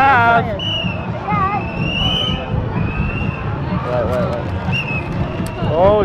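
Outdoor crowd at a street parade: scattered voices calling out over a steady murmur and low rumble, with a high held tone that comes and goes.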